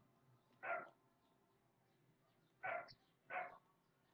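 A dog barking faintly: three short barks, one about a second in and two near the end, under a second apart.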